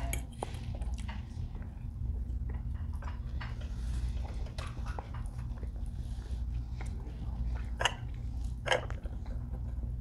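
Close-miked chewing and small clicks and scrapes of a knife and fork on a plate, over a steady low room hum; a couple of louder clicks come near the end.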